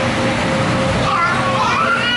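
Young children playing, with high-pitched squeals and calls that glide up and down in the second half.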